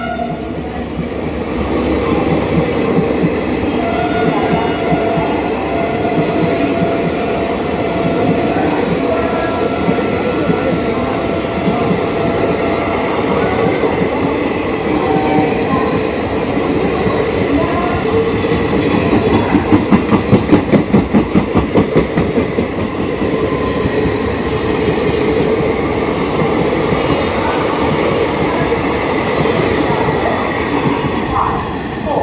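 Passenger coaches of an Indian Railways express train running past close by, a continuous rumble of wheels on rail. A faint horn note sounds about four seconds in, and from about 19 to 23 seconds a fast clickety-clack of wheels over rail joints is the loudest part.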